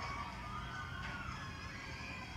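Faint background of a televised ballgame heard through a TV speaker during a gap in the commentary: a steady low hum with faint snatches of music.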